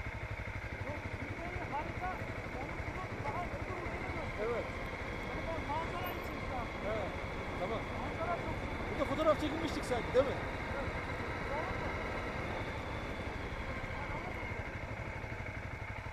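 Motorcycle engine running steadily while riding a gravel road, heard from the bike with a constant low drone, with faint muffled talk over it. A couple of brief sharper knocks come about nine to ten seconds in.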